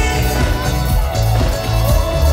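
Live rock band playing loudly, recorded from the audience, with a bass guitar line pulsing heavily in the low end.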